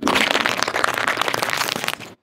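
Car tyre rolling over a heap of cherry tomatoes and bursting them one after another: a dense run of crackling pops and splats that starts and stops abruptly.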